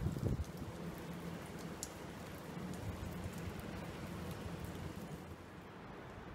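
Steady rain falling on wet paving, an even hiss with scattered drip ticks. There are a couple of low thumps in the first half-second.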